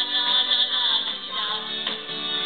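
A woman singing through a microphone and PA over loud rock backing music.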